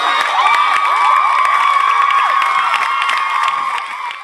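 A crowd of teenagers cheering and screaming, many high voices overlapping and held, fading a little near the end.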